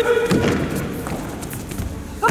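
A female karateka's short, sharp kiai shout as she launches an attack, followed by several thuds of bare feet stamping and driving on the competition mat.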